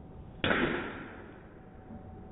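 A golf iron striking a ball off a driving-range mat: one sharp crack about half a second in, dying away over about a second.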